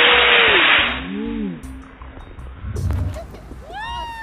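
Model rocket motor burning with a loud, even hiss that cuts out about a second in. Onlookers' long rising-and-falling calls follow, with more of them near the end.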